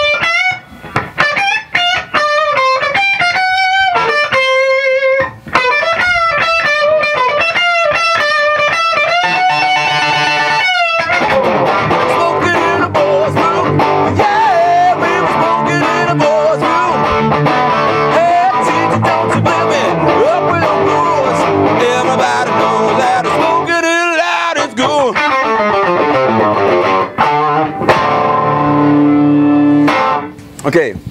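Amplified 1959 Gibson Byrdland hollow-body electric guitar playing a lead solo over a looped backing. For about the first ten seconds it plays single-note lines with vibrato, and then the sound turns denser and layered.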